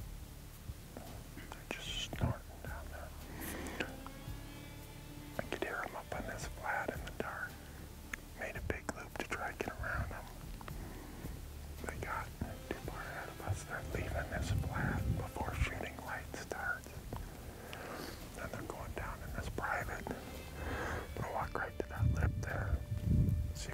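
A man whispering.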